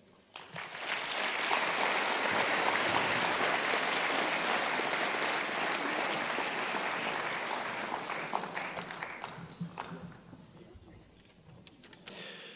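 Audience applauding in a large hall, building up within the first second and dying away over the last few seconds.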